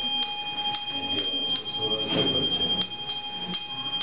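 Small metal hand bell rung continuously, its clapper striking about twice a second and keeping a steady, high ringing tone going. A voice can be heard faintly underneath around the middle.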